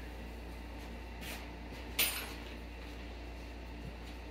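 A small hand tool set down on a hard surface with one sharp clink about halfway through, over a steady low hum.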